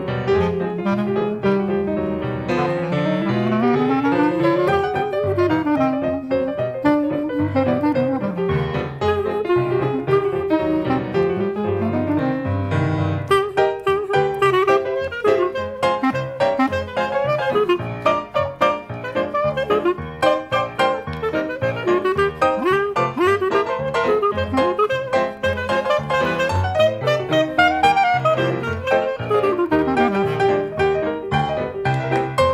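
Clarinet and piano playing a ragtime duet: the clarinet carries the melody in runs that sweep up and down over the piano's steady chords.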